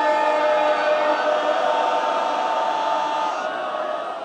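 A mournful Shia majlis elegy chanted by a man's voice, with long drawn-out held notes that fade slightly near the end.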